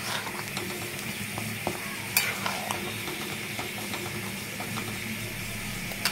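A flat spatula stirring thick prawn gravy as it simmers in a pan with a soft sizzle, with a few light scrapes and taps of the spatula against the pan. A low steady hum sits underneath.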